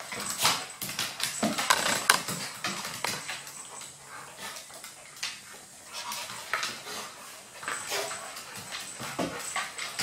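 A Golden Retriever and a Maltese play-wrestling on a wooden floor: claws click and scrabble on the boards in quick irregular ticks, mixed with brief dog vocalizations. The activity is busiest in the first two seconds, eases off in the middle, then picks up again near the end.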